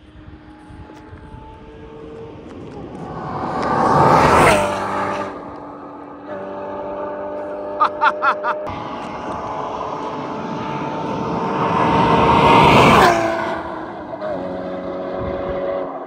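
Two cars driven past at speed, one about four seconds in and one near the end. Each engine note swells as the car approaches and drops in pitch as it goes by.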